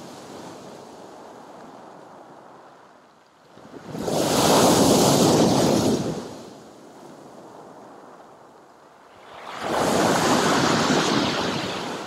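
Sea waves breaking on a pebble beach and against a concrete pier base, with two big surges about four and ten seconds in and a quieter wash of water between them.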